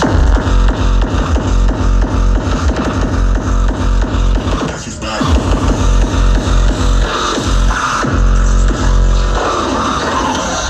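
Loud hard electronic dance music from a festival sound system, heard from within the crowd: a heavy, fast kick drum under distorted synths, with a brief drop about five seconds in before the beat comes back.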